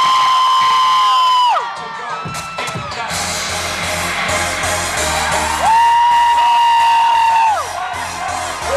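A crowd of fans cheering, with a long high-pitched scream held steady at the start and again near the end; pop music with a steady beat comes in about three seconds in.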